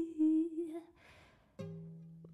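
A woman's held final sung note, wavering slightly, fades out within the first second. After a short gap a single low note starts suddenly and dies away.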